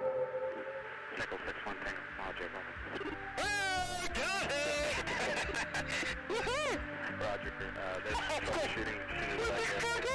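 The song's final sustained chord fades out. Faint voices follow with steep rising and falling pitch swoops, and no clear words come through.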